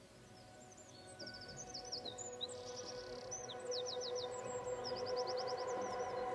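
Songbirds chirping and trilling in quick runs of repeated high notes, while a sustained ambient music chord fades in underneath and grows steadily louder.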